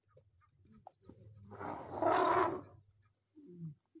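An elephant trumpeting once: a loud, harsh blast of about a second, over a low steady hum.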